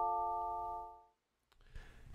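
Sampled celeste notes played bone dry with no reverb. The held notes of a rising arpeggio ring on, fade a little, and stop together about a second in, leaving near silence with no tail.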